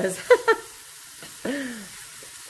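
Chopped peppers and onions sizzling in a hot nonstick skillet as they are stirred with a silicone spatula, a steady faint hiss. A woman's voice is louder over it near the start and again briefly about one and a half seconds in.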